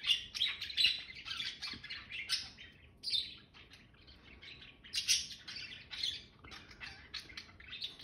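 Caged pet birds chirping and tweeting: many short, high chirps in quick succession, busiest in the first few seconds and again about five seconds in.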